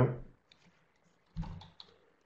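A few keystrokes on a computer keyboard, typing a short file name: faint taps with one louder knock about a second and a half in.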